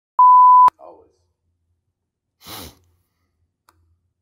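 A single steady, high-pitched electronic beep about half a second long, cut off with a click. It is followed by a faint brief vocal sound and, about two and a half seconds in, a short breathy exhale.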